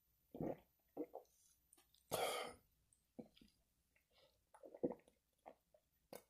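A man swallowing a shot of liquor, then a short hissing breath about two seconds in, followed by quiet gulps as he drinks a soda chaser from a glass bottle.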